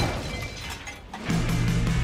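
A loud sudden crash of something falling through a ceiling, with shattering and clattering debris. About a second in, a held music chord comes in.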